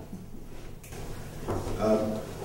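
A man's voice speaking a few words near the end, over a steady low hum of room tone.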